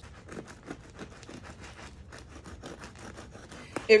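Serrated bread knife sawing through the well-toasted, crunchy crust of a French bread pizza on a wooden cutting board: a quick, faint run of crackling scrapes.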